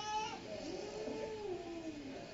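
A person's high, drawn-out voice wavering up and then down in pitch over steady arena noise, with a short cry just before it.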